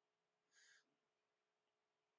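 Near silence: room tone, with one faint, brief hiss about half a second in.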